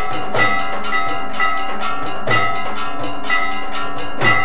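Temple bells ringing together with drum strokes in a steady beat of about two strokes a second, the ringing tones lingering between strokes: the accompaniment of a Hindu aarti.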